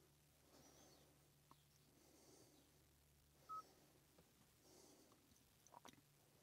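Near silence: faint room tone with a few soft ticks and one short, faint beep about three and a half seconds in.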